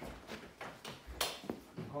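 Footsteps on rubber stable mats: about five short knocks and scuffs at a walking pace, one a little past the middle louder and sharper than the rest.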